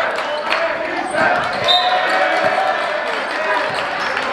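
A basketball dribbled on a hardwood gym court: a few separate bounces, unevenly spaced, with people's voices in the gym around them.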